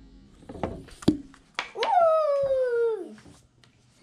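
A long, falling, whine-like vocal call lasting about a second and a half, preceded by a few sharp clicks, the loudest of them about a second in.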